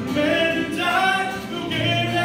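Live song: a man singing held notes into a microphone over an acoustic guitar, amplified through a PA in a reverberant hall.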